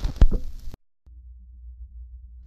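Vinyl record noise between two songs: a cluster of sharp clicks and crackle that cuts off abruptly a little under a second in, a moment of dead silence, then a faint low hum.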